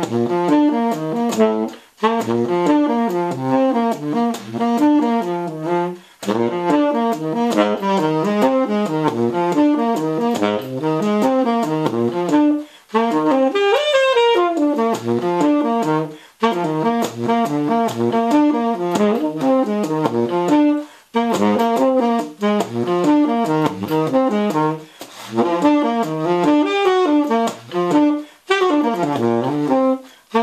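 Tenor saxophone, a The Martin tenor with a Drake "Son of Slant" 7L mouthpiece and a Rico Royal #3 reed, playing fast improvised jazz lines in phrases broken by short breaths. Near the middle one run climbs into the upper register.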